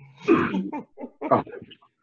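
Laughter in a few short bursts, heard through video-call audio.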